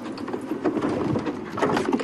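Game-drive vehicle driving off-road through bush, its engine running under the rattles and many short clicks and knocks of the bouncing vehicle.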